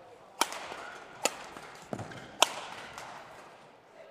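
Badminton rackets striking the shuttlecock in a fast doubles rally: three sharp hits about a second apart, the last and loudest about two and a half seconds in, each echoing briefly in the sports hall. A dull thud, a player's footstep on the court, falls between the last two hits.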